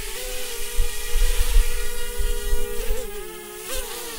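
Micro Drone quadcopter's four small motors and propellers whining steadily as it hovers, trimmed in and stable; the pitch wavers a little near the end.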